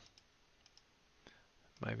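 A few faint, spaced-out clicks of a computer mouse.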